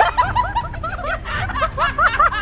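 Young women laughing hard: a quick, unbroken run of short rising-and-falling laughs, about five a second.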